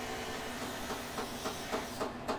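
Faint, steady hissing noise of a neighbour's home-improvement work, with a few faint ticks; it stops at the end.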